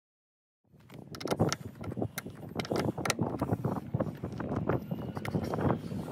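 Car battery terminal clamp being undone and handled: a dense run of irregular metallic clicks and rattles, starting about a second in.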